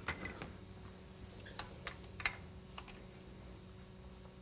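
A handful of faint, sharp clicks as hands handle small metal parts at a carburetor's fuel inlet fitting. The loudest click comes about two seconds in.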